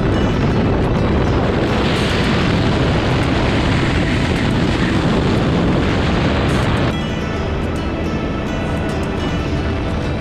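Background music over the loud rushing noise of a catamaran speed boat running at about 100 mph. The rushing cuts off suddenly about seven seconds in, leaving the music.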